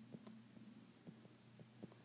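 Near silence: a faint steady electrical hum with several soft ticks of a stylus tapping a tablet screen while writing numbers.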